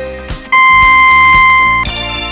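Quiz countdown timer ending: a loud, high electronic beep held for over a second, starting about half a second in, over background music with a steady beat. Just before the end, a bright cluster of ringing tones starts as the answer is revealed.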